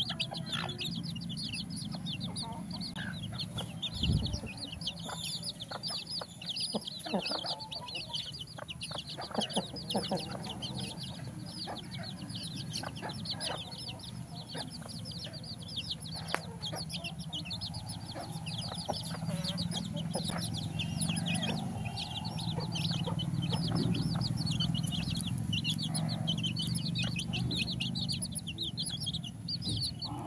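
A flock of desi chicks peeping continuously, many short high cheeps overlapping, with a lower clucking now and then and scattered sharp taps.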